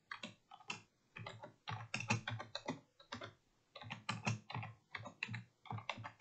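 Typing on a computer keyboard: a quick, uneven run of keystrokes with a short pause about halfway through.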